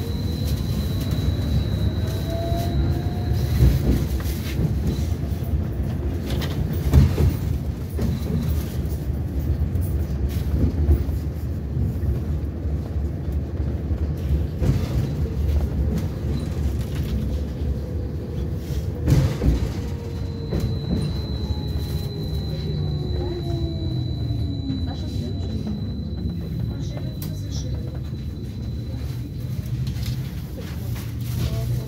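Belkommunmash BKM 802E tram heard from inside the car while running along the track: a steady rumble of wheels on rail with a few sharp knocks over the track. The traction drive's whine rises in pitch a few seconds in, and falls in a long glide past the middle as the tram slows. A thin high whine comes and goes.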